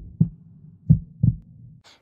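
Heartbeat sound effect: low thumps in lub-dub pairs about a second apart, over a faint low hum, stopping just before the end.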